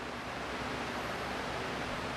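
Steady, even hiss of room tone with no distinct sound event.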